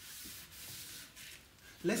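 Cloth rubbing across a chalkboard, wiping off chalk writing in a few strokes.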